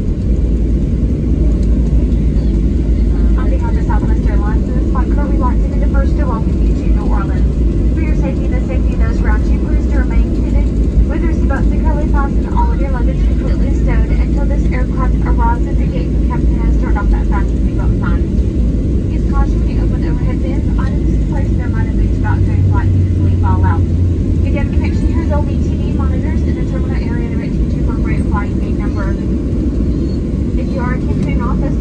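Cabin noise of a Boeing 737-700 rolling out after landing: a steady low rumble from its CFM56 engines and the wheels on the runway. Indistinct voices run over it from a few seconds in.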